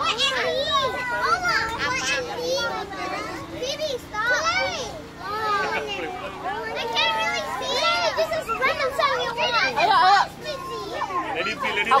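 A group of children talking and calling out over one another, with high-pitched voices overlapping and no single voice standing out.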